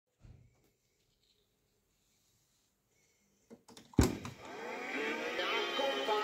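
Near silence, then a few small clicks and a loud mechanical clunk about four seconds in as the JVC RC-550 boombox's cassette play key goes down; music with singing then starts from the tape through the boombox's speakers and carries on steadily.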